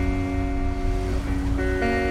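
Acoustic guitar letting chords ring, moving to new notes about a second in and again near the end, over a low steady rumble.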